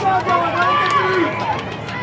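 Indistinct talking from people close by, voices rising and falling through the first second and a half, easing off briefly near the end.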